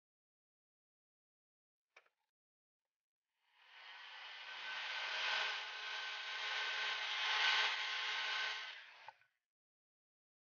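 A paint-stripping heat gun blowing hot air onto a PVC bracket to soften it: a steady rush of air with a faint fan whine. It starts about three and a half seconds in and cuts off about nine seconds in, after a faint click about two seconds in.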